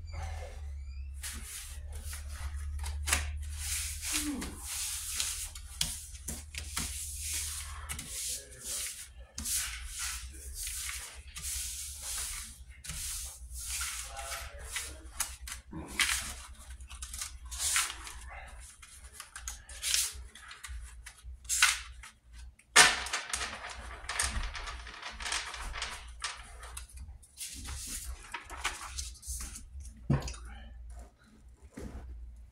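Paper playing cards being gathered, slid and shuffled on a desktop: a long run of rustling swishes and sharp snaps, the loudest snap about 23 seconds in. A low steady hum runs underneath, stronger in the first eight seconds.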